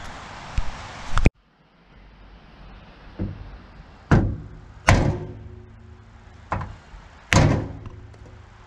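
Hammer blows on a wooden block, driving a 2x4 stake down into the steel stake pocket of a dump trailer's side: about seven heavy knocks at irregular intervals, some with a short ring from the steel.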